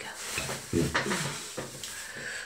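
Rustling and light handling noises close to the phone's microphone, with a brief low vocal murmur about a second in.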